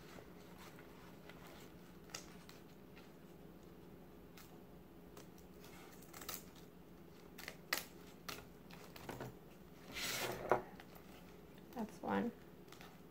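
Scissors snipping through a mat in separate, scattered cuts, the loudest about ten seconds in, over a faint steady hum.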